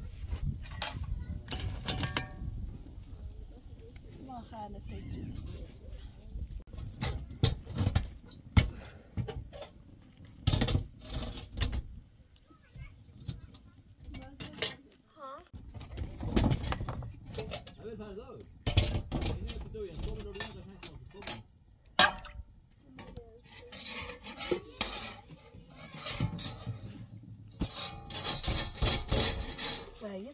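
Metal spatula clinking and scraping on a domed iron saj griddle as thin flatbread is turned over a wood fire, with irregular sharp clicks and knocks throughout.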